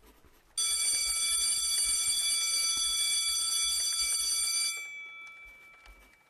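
School bell ringing: it starts abruptly, rings steadily for about four seconds, then stops and fades out as it rings down.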